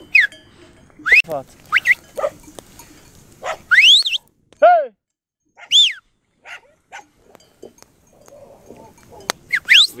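Dogs barking and yelping in the dark: a string of short, high calls that swoop up and fall away, spaced out over several seconds.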